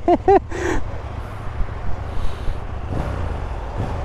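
KTM 890 parallel-twin engine idling with a steady low rumble.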